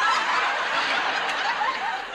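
Studio audience laughing, breaking out suddenly at the start and holding steady.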